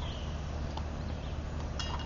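A faint click about a second in, then a sharp metallic clink with a short ring near the end, as the air-powered antenna launcher is handled during reloading. A steady low hum runs underneath.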